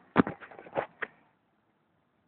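A quick run of five or six sharp knocks and clicks over about a second, the first the loudest: handling noise.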